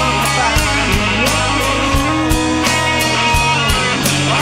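Rock band playing live: electric guitars, bass guitar and a drum kit, with cymbal strikes keeping an even beat and guitar lines bending in pitch, no vocals.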